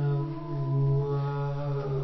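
A low voice chanting one long held note, a steady drone whose vowel changes about halfway through.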